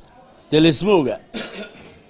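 A man's voice: a short spoken word, then a brief cough about a second and a half in.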